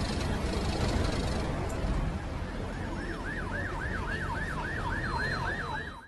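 Siren in fast yelp mode, its pitch sweeping up and down about four times a second, coming in about three seconds in over a steady noisy rumble; it cuts off abruptly at the end.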